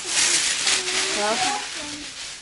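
Plastic shopping bags and food packaging rustling and crinkling as groceries are unpacked, easing off near the end.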